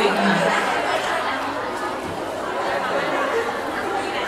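Crowd chatter: many people talking over one another in a large hall.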